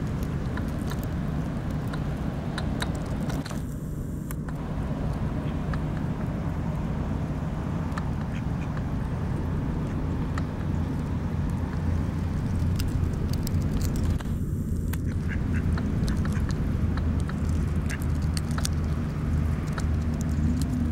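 A duck calling over a steady low hum, with many faint clicks.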